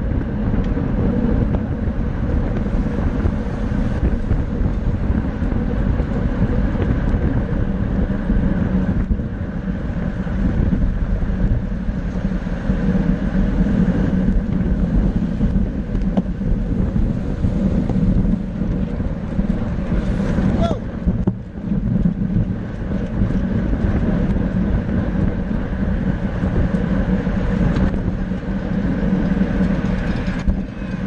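Steady wind rush on the microphone of a camera riding on a road bike at about 25 to 30 mph, with a brief lull about two-thirds of the way through.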